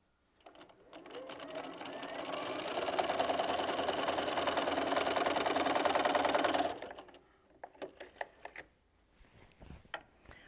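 Electric sewing machine stitching a seam: it starts about a second in, speeds up over the next couple of seconds, runs steadily, then stops abruptly about seven seconds in. A few light clicks follow as the fabric is pulled away.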